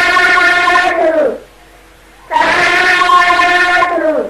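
A voice intoning long drawn-out 'sadhu' calls, the closing response of Buddhist chanting, each one held on a steady pitch and dropping at its end. One call ends about a second in, and the next begins past halfway and falls away right at the end.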